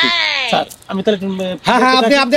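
A loud, bleat-like cry that slides down in pitch for about half a second, followed about a second in by a shorter held note.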